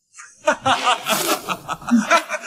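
Loud laughter, a rapid string of 'ha-ha-ha' that breaks in sharply a moment after a dead-silent cut.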